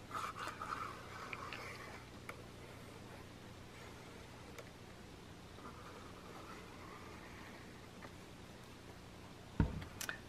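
Fine-tip glue applicator bottle drawing a bead of glue along paper edges: a faint, soft scratching that comes and goes, over a low steady hum. A single knock near the end as the bottle is set down on the wooden table.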